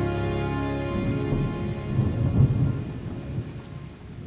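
Closing seconds of a ballad's instrumental track: a held chord stops about a second in, leaving a rain-and-thunder effect, a steady rain hiss under a rolling low rumble that swells about two seconds in.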